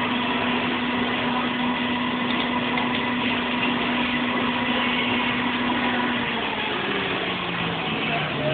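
Electric blower of a stuffed-bear washing station running steadily, sending a rush of air through the hand-held brush nozzle as it is worked over the plush bear. Its motor hum drops to a lower pitch about six seconds in.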